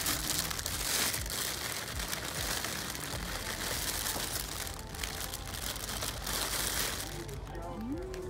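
Plastic cellophane flower sleeves crinkling and rustling close by as wrapped hydrangea bouquets are handled, a dense crackly rustle that dies down about seven seconds in.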